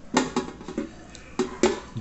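Close-up mouth sounds of someone eating beef shank with farofa: wet chewing and lip-smacking, heard as about six sharp, irregular smacks.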